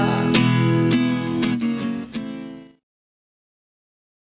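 Acoustic guitar strummed in steady chords, with no singing, stopping suddenly about two and a half seconds in.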